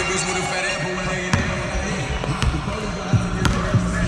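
A basketball bouncing on a hardwood gym floor as it is dribbled up the court, with a few sharp bounces about a second apart.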